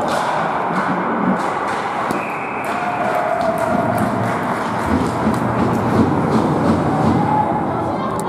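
Ice hockey game heard from rinkside: steady noise of skates on the ice with many sharp clacks of sticks and puck, and shouts from players or spectators.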